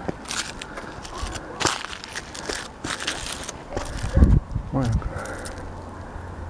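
Footsteps crunching on dry ground and brush: a quick run of irregular crackles and crunches, thickest in the first half.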